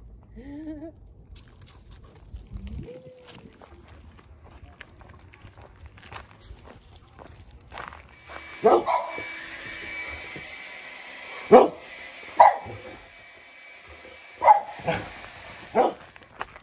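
A dog barking: about five short, sharp barks spaced a second or two apart through the second half.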